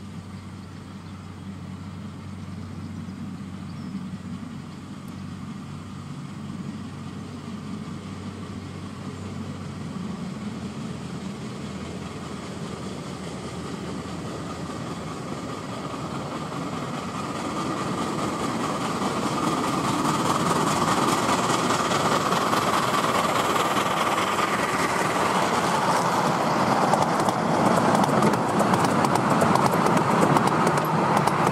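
Miniature 4-8-4 steam locomotive approaching under steam, its rhythmic exhaust beats and the run of wheels on the rails growing steadily louder. It is loudest over the last ten seconds as the engine and its coaches pass close by.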